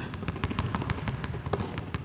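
A basketball being dribbled fast and low on a hardwood gym floor, a quick run of sharp bounces several a second.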